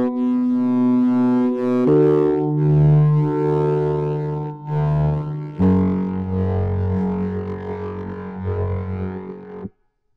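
Synthesizer chords played from a Launchpad X grid controller in a microtonal tuning. There are three held chords, changing about two seconds in and again near six seconds, and the sound stops abruptly just before the end.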